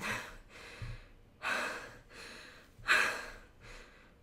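A woman breathing hard, deep noisy breaths in and out about every second and a half: she is out of breath from carrying an 18-pound dog up three flights of stairs.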